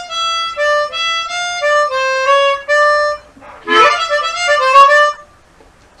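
Chromatic harmonica playing a blues lick in two phrases: a run of clear single notes mostly stepping down in pitch, a brief pause, then a busier phrase that opens with a slide up in pitch and stops about a second before speech resumes.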